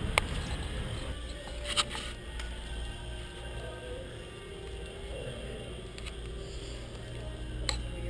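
Faint background music over a steady low hum of room noise, broken by a few sharp clicks.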